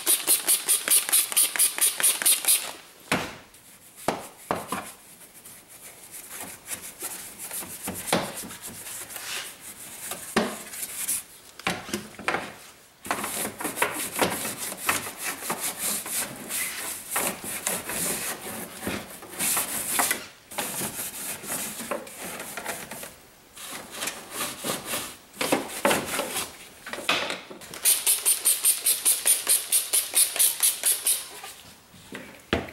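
Bristle brush scrubbing a soapy, wet engine bay, including a ribbed rubber intake hose, with back-and-forth strokes. Fast, even strokes come at the start and again near the end, with slower, uneven scrubbing in between.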